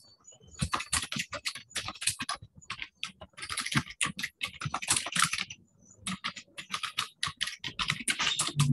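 Typing on a computer keyboard: runs of quick, irregular keystrokes with short pauses about three and about six seconds in.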